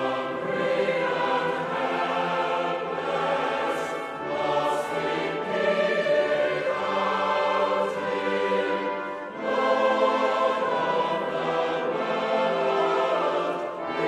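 A choir singing a hymn with orchestral accompaniment, in long sustained phrases with brief breaths between lines.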